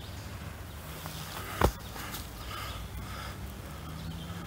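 Quiet outdoor woodland background with a faint low hum. One short soft bump about a second and a half in.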